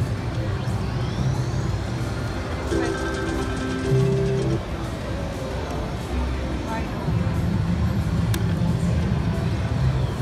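Mega Meltdown video slot machine spinning and paying, playing its electronic tones and short jingles, with a rising chirp near the start and a longer held tune over the last few seconds, over the constant noise of a casino floor.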